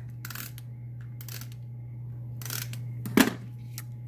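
Handheld tape runner pressed and drawn across cardstock in three short swipes, laying down adhesive, then a sharp click about three seconds in. A steady low hum runs underneath.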